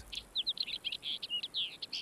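A bird chirping quickly: a run of short, high notes, many sliding downward, several a second.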